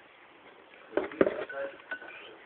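Plastic clicks and knocks from a desk telephone handset being handled, starting about a second in, followed by two short beeps.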